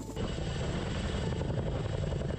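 CH-47 Chinook tandem-rotor helicopter hovering, its rotors giving a steady rapid beat under a broad turbine and rotor-wash noise. The sound starts a moment in.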